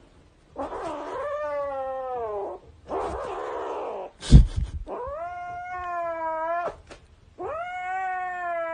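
Cat yowling (caterwauling) in long, drawn-out wailing calls, three in all, each sliding in pitch, with a harsher noisy stretch between the first two. A loud thump sounds a little over four seconds in.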